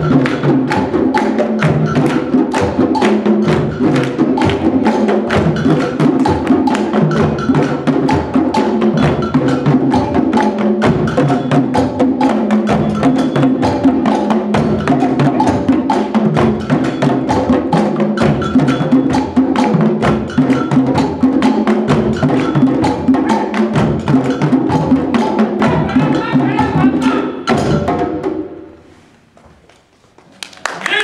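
An ensemble of djembes and other hand drums playing a fast, driving rhythm together, with hand clapping. The drumming stops about two seconds before the end.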